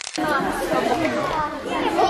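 Many children's voices chattering and calling out at once, after a brief cut-out of the sound right at the start.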